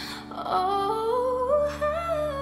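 A voice in a worship song, humming or singing a wordless line that climbs in small steps over sustained accompaniment chords.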